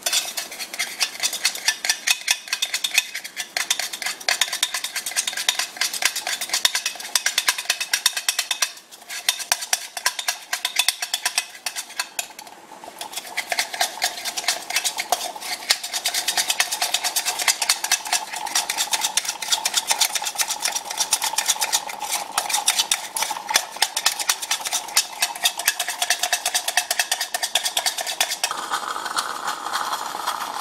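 A spoon beating sugar with a splash of the first espresso in a small stainless steel pitcher: rapid, continuous clinking strokes against the metal sides, whipping it into the sugar foam (espumita) for Cuban coffee. The beating breaks off briefly twice partway through.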